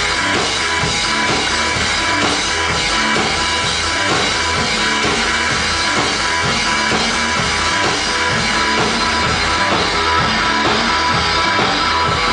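Live rock band playing loud: drums keep a steady beat under electric bass and guitar.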